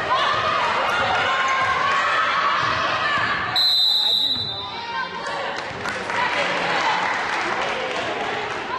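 Basketball game in a gym: voices and court noise, then a referee's whistle blown once for about a second, halfway through, stopping play.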